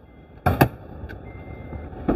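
Two sharp clicks close together about half a second in, then a fainter click, with a faint high beeping tone coming and going in pieces about half a second long.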